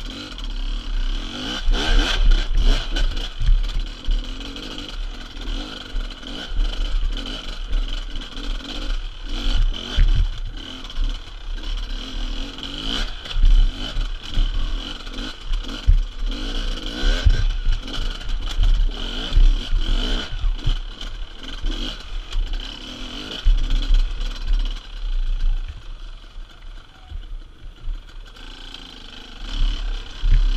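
Beta enduro motorcycle's engine revving up and down in repeated bursts as the bike climbs over rocks, with sharp knocks and clatter from the tyres and chassis hitting stones.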